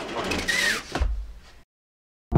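Handling sounds inside an RV: a sliding scrape with a brief squeak, then a thump about a second in, before the sound cuts out.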